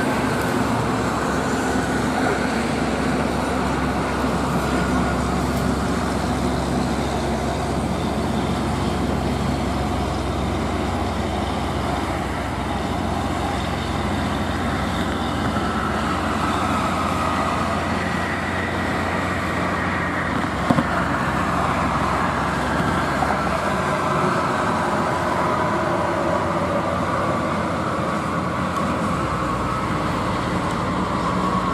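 Highway traffic: heavy trucks and a coach passing on a toll road, a steady drone of diesel engines and tyre noise with slowly shifting pitch as vehicles go by. A single brief click about two-thirds of the way through.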